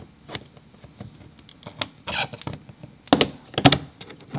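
Pry tools clicking and scraping against a Tesla Model Y's plastic rear bumper reflector light as it is levered out, with a few sharp snaps near the end as its retaining clips let go.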